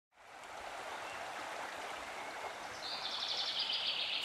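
Soft water ambience, an even rushing hiss that fades in at the start. A high, rapid trill joins it about three seconds in.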